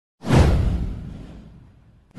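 Intro sound effect: a whoosh that sweeps downward in pitch over a deep boom, starting suddenly a moment in and fading away over about a second and a half.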